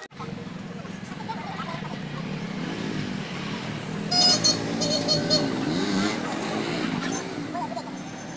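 Busy street ambience: vehicle engines running and people's voices in the background, with a short run of high beeps about four seconds in.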